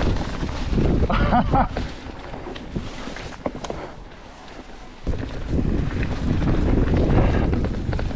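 Wind buffeting the camera microphone while a mountain bike rolls along a narrow dirt singletrack through close brush. The rumble eases for a few seconds in the middle, then comes back strongly about five seconds in.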